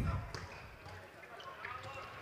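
Faint floorball game sounds: a few light clicks of sticks and the plastic ball on the court, over quiet hall background.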